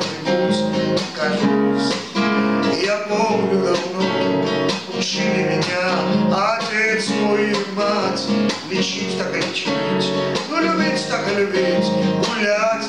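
Strummed nylon-string classical guitar accompanying a man's singing voice in a Russian song, the strokes falling in a steady rhythm.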